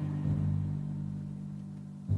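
Low orchestral music: a deep drum stroke just after the start rings on in sustained low tones that slowly fade.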